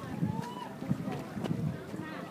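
Handling noise from a handheld camera being carried: irregular low thumps and a few sharp clicks, with fabric brushing over the microphone.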